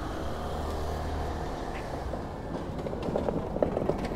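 Street noise with a steady low rumble, then the rattle of a hand trolley's small wheels rolling over the pavement, growing louder over the last second and a half as it comes up.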